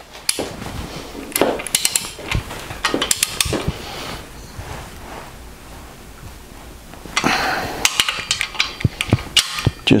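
Ratchet of a torque wrench clicking as main bearing cap bolts are run down, with an occasional knock. The clicking comes in two spells, and the second, near the end, is quicker and denser.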